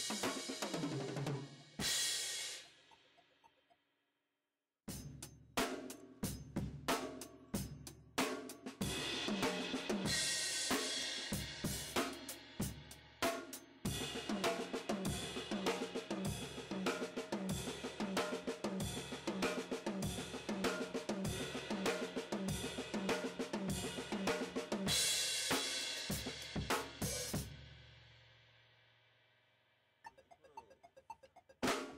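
Acoustic drum kit played fast: a cymbal crash rings out and then breaks off for a moment. A dense run of strokes follows across snare, toms, bass drum and cymbals, and it ends on a cymbal crash that rings and fades near the end.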